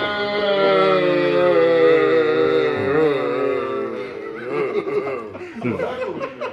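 A man's long drawn-out shout held on one pitch for about four seconds, wavering near its end, then men laughing.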